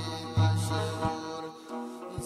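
A Burushaski ginan, a devotional song: a chanted vocal line over a deep sustained bass note with a few drum strikes. The bass drops out briefly near the end.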